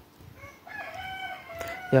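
A rooster crowing once, starting about half a second in and lasting just over a second.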